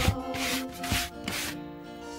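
A hand brush sweeping a hard floor in short, quick strokes, about two a second.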